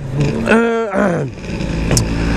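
Two-stroke Vespa scooter engine running while riding, with wind noise on the microphone. In the first second a man's voice holds a drawn-out hesitation sound.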